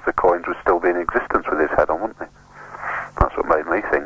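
Speech: two men talking on a radio phone-in broadcast.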